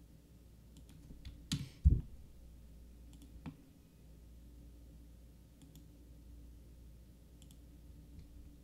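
A few separate sharp clicks of someone working a computer, with a louder thump about two seconds in, over a faint steady hum.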